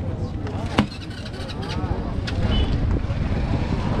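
A scooter's hinged seat being lowered and shut, with one sharp click of the seat latch about a second in, over background voices and a low rumble of market hubbub.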